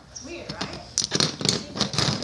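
Handling clatter: a quick run of sharp knocks and rustles in the second half as toys and the phone are jostled about, after a little of a child's voice.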